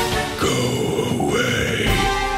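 Marching band music broken by a sudden hit, then a voice-like electronic horror sound effect, like a growl, that bends up and down in pitch for about a second and a half before the band's chords return.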